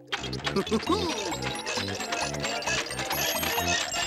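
Comic machine sound effects over lively music for a toy sandwich-making machine at work: a quick chugging beat under a busy clatter of clicks and short wobbly pitched blips.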